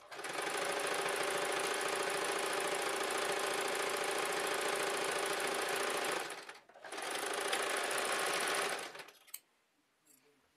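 Janome electric sewing machine stitching in two runs: about six seconds of steady sewing, a brief pause, then a second run of about two seconds that stops about nine seconds in.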